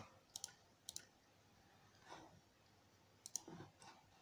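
Faint computer mouse clicks, a few separate short clicks with near silence between them, as the arrow button of a program on screen is pressed to step through lotto draws.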